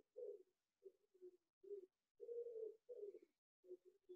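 Faint cooing of a bird: a series of low, steady notes in two similar phrases, each starting with a longer note followed by shorter ones.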